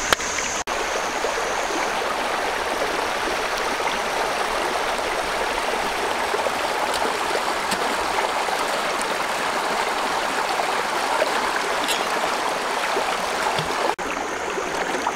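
Shallow rocky stream rushing over stones, a steady even wash of water, briefly cut off about half a second in.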